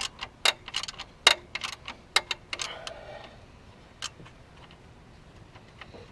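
Hand tools clicking and tapping on metal engine hardware at the belt drive. There are about a dozen sharp, irregular clicks over the first two and a half seconds, then a single click about four seconds in.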